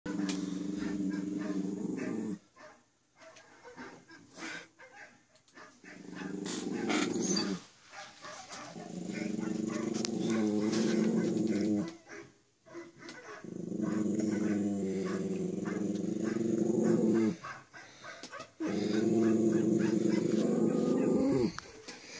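Small long-haired dog howling along to a video in about five long, low, drawn-out howls with short pauses between, Wookiee-like to its owner; the last howl falls in pitch as it ends.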